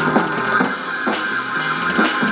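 Electronic drum kit played along to a heavy rock song: bass drum, snare and cymbal hits about two a second over the song's sustained bass and guitar.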